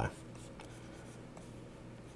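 Faint scratching of a plastic stylus drawing strokes on a tablet screen, over a low steady hum.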